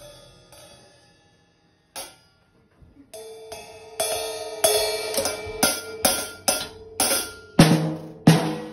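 Crash cymbal and drums of a small drum kit struck unevenly with one drumstick by a toddler. A cymbal hit rings out at the start and fades, then comes another hit about two seconds in. From about three seconds a run of irregular strikes follows, about two a second and growing louder, with a deep drum hit near the end.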